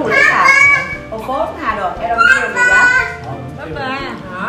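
People talking, with children's voices and background music underneath.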